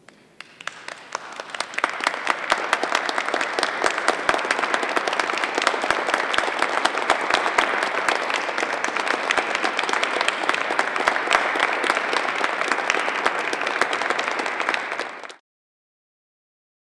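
Audience applauding, swelling over the first couple of seconds and then steady, until it cuts off abruptly near the end.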